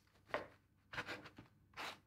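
A knife sawing through a crusty baguette on a wooden cutting board: about four short, faint scratchy strokes.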